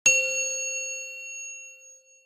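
A single bell ding sound effect: one struck-bell tone with several clear overtones that rings out and fades away over about two seconds.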